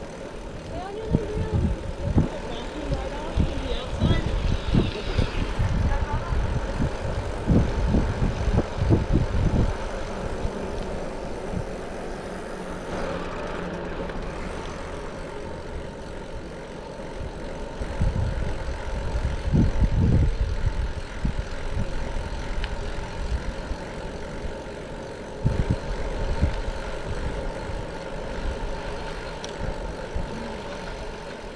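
Wind buffeting the microphone of a camera on a moving bicycle. It comes as gusts of low rumble, strongest in the first ten seconds, again around the two-thirds mark and near the end, over a steady rolling road noise.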